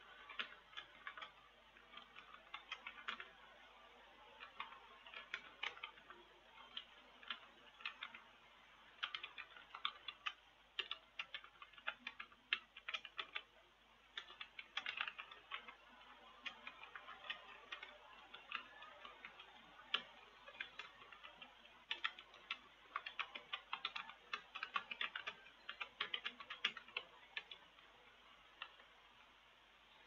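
Typing on a computer keyboard: irregular key clicks in quick runs with short pauses, thinning out near the end.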